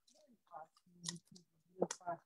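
A woman's voice speaking softly in short, broken fragments with small clicks between them, choppy as sound over a video call.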